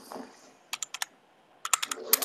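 Typing on a computer keyboard: three quick key clicks about three-quarters of a second in, then a faster run of four clicks near the end.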